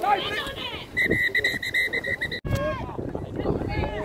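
Referee's pea whistle blown in one trilling blast of about a second and a half, cut off abruptly, with players' shouts around it.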